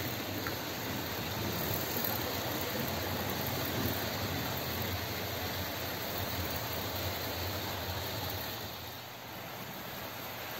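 Steady whirring rumble of model trains running along the layout's tracks, with no distinct clicks or pitch changes, easing a little near the end.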